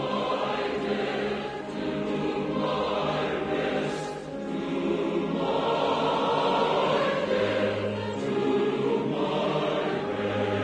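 Choral background music: a choir singing slow, held chords that change every few seconds.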